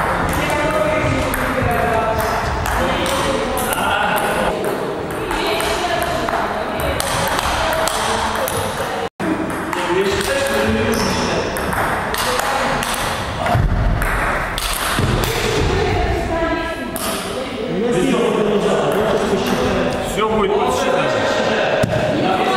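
Table tennis rally: the ball clicking off bats and table in quick succession, over indistinct voices. The sound cuts out for an instant about nine seconds in.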